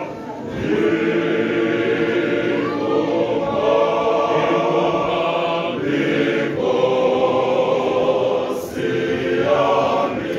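Male voice choir singing in harmony, holding chords in phrases with brief breaks about every three seconds.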